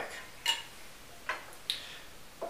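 Three light clinks of tableware as tea-making finishes: a glass teapot and a small tea strainer touching a porcelain teacup and saucer. The first clink, about half a second in, is the clearest.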